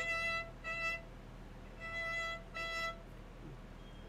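Solo violin playing the chain bow stroke: four short bowed notes on the same high pitch, in two pairs about a second apart, the bow lifting slightly between strokes without stopping, like a stone skipping across water.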